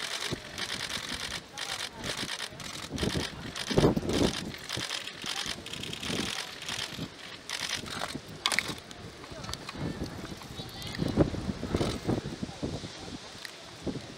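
Footsteps on gravel and a murmur of voices outdoors, with rapid sharp clicking through the first half and a few heavier thuds.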